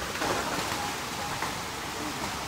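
Steady rush of water from a small waterfall spilling into a pond.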